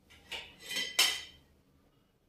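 White ceramic dishes clinking against each other as they are lifted out of a wooden dish rack: three sharp clinks with a short ring, the loudest about a second in.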